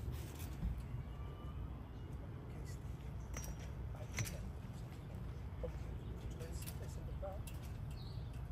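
Quiet open-air ambience: a steady low rumble with a few faint bird chirps and scattered small clicks.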